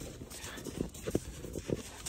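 Horses' hooves stepping in snow close by: a few soft, uneven thuds.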